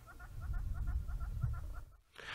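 A bird calling in a rapid, even series of short chirping notes, about seven a second, that stops just before the end, over a low rumble.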